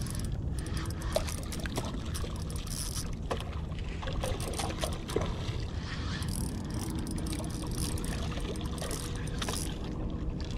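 A hooked milkfish (bangus) thrashing at the water's surface near the rocks as it is played on a rod: scattered small splashes and clicks over a steady low rumble.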